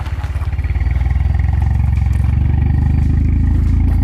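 Mitsubishi Lancer Evolution X's freshly rebuilt 2.0-litre turbocharged four-cylinder running steadily at idle, heard at the exhaust; it grows a little louder about half a second in, then holds.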